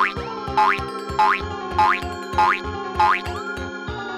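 Upbeat background music with a regular beat and a short rising sweep that repeats six times, about every 0.6 s.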